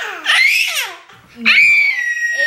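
Baby's high-pitched squealing screams: one sliding squeal that fades about a second in, then a second, steadier one starting about one and a half seconds in, part of a screaming phase.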